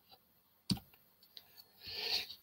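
A single sharp click about two-thirds of a second in, the click that advances a presentation slide, followed by a fainter tick and a soft breath near the end, against near silence.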